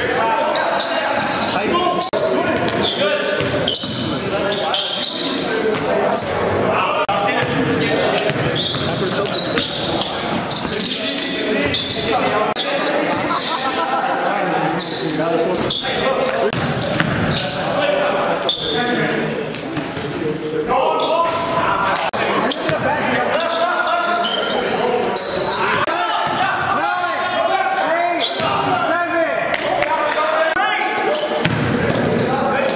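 Basketball bouncing on a gym floor during play, with many short thuds, over voices in a reverberant large hall.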